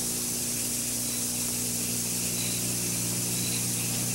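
Steady hiss with a low, even hum beneath it: the background noise of an old off-air recording of a TV broadcast, with no voice or effect sounding.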